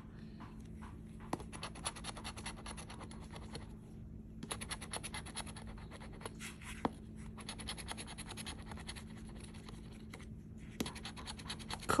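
Metal coin scratching the latex coating off a lottery scratch-off ticket in quick back-and-forth strokes, about ten a second, in several runs broken by short pauses and a few single taps.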